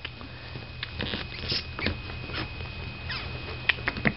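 A kitten's paws and claws scrabbling and pattering on a blanket and carpet as it plays, with scattered small clicks and brief scratches.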